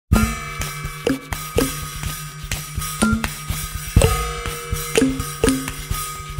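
A drum beat played on acoustic percussion, every hit really played and layered by overdubbing, with no electronic effects, samples or loops. Sharp strikes come about two a second, many with a short pitched ring, over a steady low hum.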